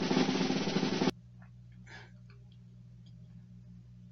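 Loud drum-roll-like percussion that cuts off abruptly about a second in, leaving a quiet steady low hum of room tone with a few faint taps.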